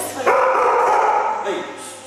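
A small dog shut in a plastic pet crate yapping, in a loud burst that lasts about a second, with short whines around it.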